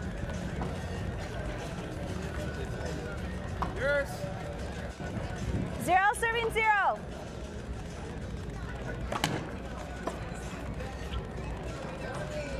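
Outdoor court ambience with a steady background hum and distant chatter. A voice cries out briefly about four seconds in, then gives a longer wavering call about six seconds in, the loudest sound here. A single sharp knock follows about nine seconds in.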